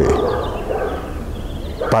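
A dog growling, a low rough rumble that slowly fades over the two seconds.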